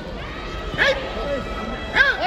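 Short, sharp shouted calls ringing out in a large reverberant sports hall, one just under a second in and another at the end, over the hall's background hubbub.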